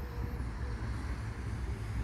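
Low, steady rumble of a distant vehicle engine, with a thin, high chirp near the start.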